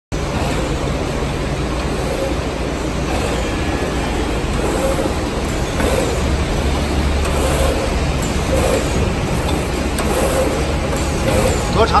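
Automatic wire cutting and stripping machine running: a steady mechanical drone with light clicks from its pneumatic cylinders every second or two.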